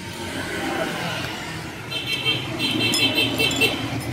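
A motor vehicle passing on the road, its noise swelling steadily, with faint voices in the background. A high-pitched tone pulses on and off in the second half.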